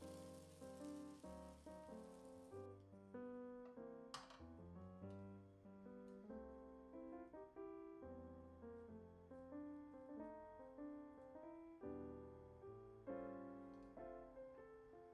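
Soft background piano music playing a gentle melody of separate, decaying notes. For the first few seconds a faint hiss sits under it and then cuts off abruptly.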